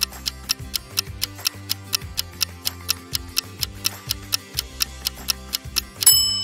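Countdown-timer clock ticking, an even run of about three ticks a second, over a background music track with low held notes.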